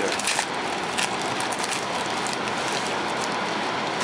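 Steady hiss of background noise with no voices, with a few light clicks in the first second.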